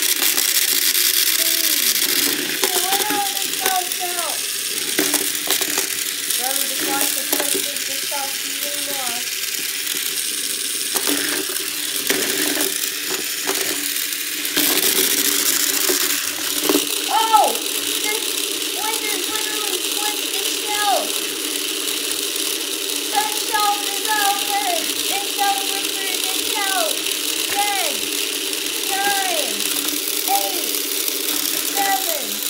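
Hexbug BattleBots toy robots driving and shoving each other on a wooden arena floor: small electric motors whirring with plastic parts rattling and clicking throughout, and a sharper knock of a hit about halfway through.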